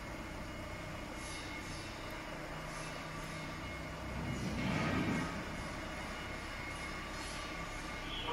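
Industrial bubble washing machine running: a steady mechanical hum and noise from its blower, pump and conveyor, with faint regular high ticking. A louder rushing swell lasts about a second, midway through.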